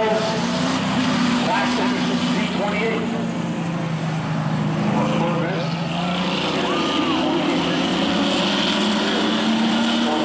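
Engines of two street cars, a Corvette and a Camaro, pulling away from a standing start and running side by side, a steady engine drone.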